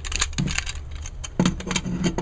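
Plastic parts of a Transformers Deluxe action figure clicking and rattling as its panels are flipped up by hand during transformation: a quick, irregular run of small sharp clicks.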